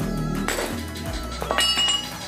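Metal clinks from old steel steering linkage parts being handled on the shop floor: a knock about half a second in, then a sharper clink near the end that rings briefly. Background music plays underneath.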